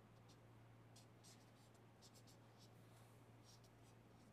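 Faint strokes of a felt-tip marker on paper as characters are written: short strokes, several a second, over a steady low hum.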